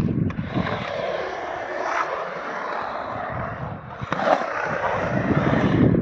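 Skateboard wheels rolling on smooth concrete, a steady rumble that grows heavier near the end as the board carves down a bank, with a couple of sharp clicks along the way.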